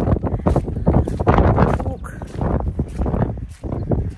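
Strong wind buffeting the microphone in uneven gusts, a loud low rumble, with a voice partly buried under it.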